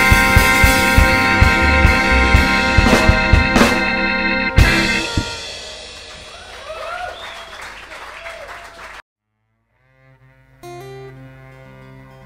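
Live ska band with a horn section of trombone, trumpet and saxophone, over upright bass and drums, playing loud to a final hit about four and a half seconds in, then ringing away. The sound cuts out to silence, and a quieter strummed acoustic guitar piece starts near the end.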